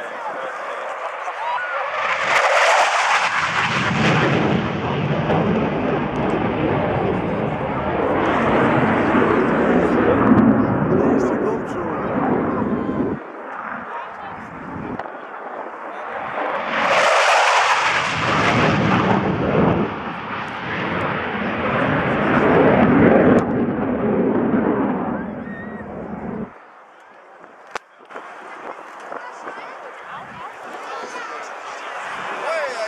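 Jet noise from an F-4F Phantom II's twin J79 turbojets flying low display passes. It swells loud about two seconds in and fades by about thirteen seconds, then swells again about sixteen seconds in and dies away a few seconds before the end.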